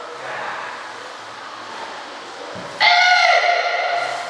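A child's karate kiai during a kata: one loud, high-pitched shout almost three seconds in, held for about a second.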